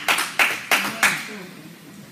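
Hands clapping: about four sharp claps roughly a third of a second apart, then dying away.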